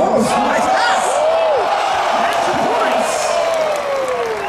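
Basketball crowd in the stands: voices shouting and whooping, rising and falling in pitch, over a steady crowd din.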